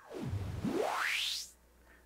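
White-noise hiss from the Pioneer XDJ-RX2's Noise Color FX, its filter swept down and then rising steadily into a bright high hiss as the Color FX knob is turned. It cuts off about a second and a half in.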